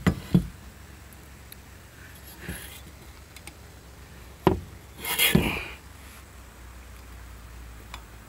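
Metal knocks and clicks from a Volvo 850 steering column and its ignition lock being handled on a car's sheet-metal body: two knocks at the start, a sharp click about four and a half seconds in, then a short scraping rub.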